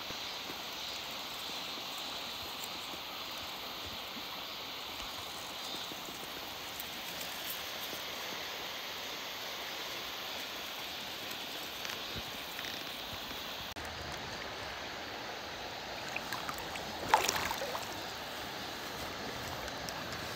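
A shallow, stony river running steadily, a constant rush of flowing water. There is one short, louder burst of sound a few seconds before the end.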